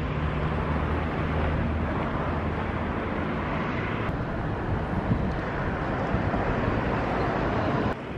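Wind buffeting the camera microphone: a steady rushing noise throughout, with a low steady hum under it for the first second and a half or so.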